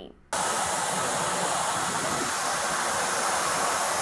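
Steady rushing hiss picked up by a police body-worn camera's microphone outdoors, starting abruptly a moment in and holding even throughout.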